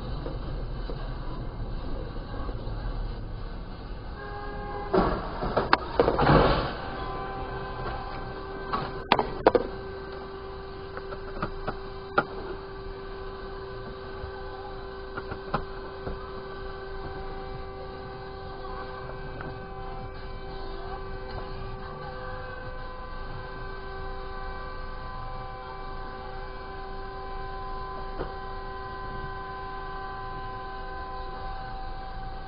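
Road collision between a Ford Focus and a Hyundai County minibus: a cluster of loud bangs and crunches about five to six seconds in, more bangs about nine seconds in, and a few smaller knocks after. A car horn starts sounding just before the first bangs and keeps on steadily without a break, a horn stuck on after the crash, over a low rumble of the camera car's engine and tyres.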